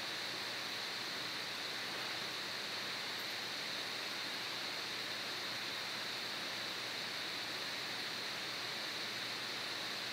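Steady, even background hiss of a voice-recording microphone, with a higher-pitched band in it and no other sound.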